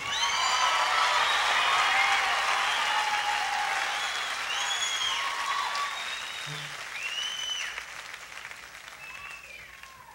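Concert audience applauding and cheering, with scattered whoops over the clapping, greeting a band member just introduced from the stage. The applause is loudest at first and dies away gradually toward the end.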